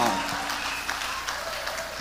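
Audience applause that gradually fades.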